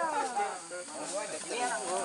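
Voices of several men talking in the background, quieter than the nearby speech, over a steady faint hiss.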